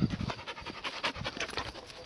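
A large shepherd-mix dog panting in quick, short breaths while walking on a leash.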